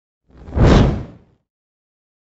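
A single whoosh sound effect with a deep rumble underneath, swelling up and dying away within about a second: the transition sound of a news logo intro.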